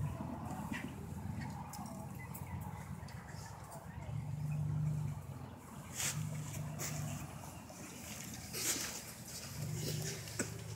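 A low steady rumble that swells now and then, with faint murmuring voices and a few soft rustles of a cloth flag being folded by hand.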